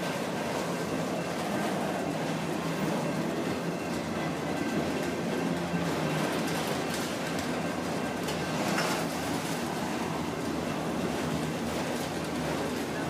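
Freight train of CSX autorack cars rolling past, a steady noise of steel wheels on rail that goes on without a break.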